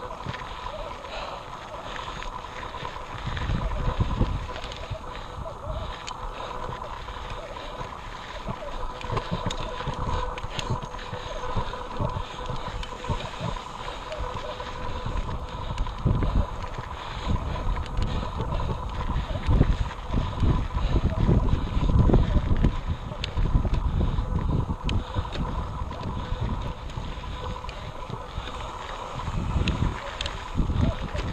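Wind buffeting the microphone of a camera riding on a mountain bike as it climbs a rocky dirt trail, the gusts heaviest from about halfway through. Light knocks and rattles come from the bike over the rocks.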